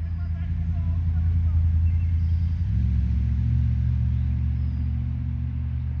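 A nearby motor engine running with a low, steady rumble that swells in the first second or two, changes pitch about three seconds in, then slowly fades.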